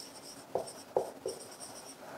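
Marker pen writing on a whiteboard: a thin, high squeak in short strokes as the letters are drawn, with a few brief taps as the tip touches down.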